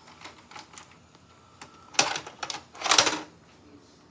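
VCR ejecting a VHS cassette and the cassette being pulled out by hand: a few faint mechanical clicks, a sharp clack about two seconds in with more clicks after it, then a short clatter of the plastic cassette about three seconds in.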